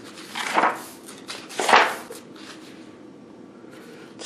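Paper pages of a ring binder being turned by hand: two short rustling swishes, the second louder, then quiet handling.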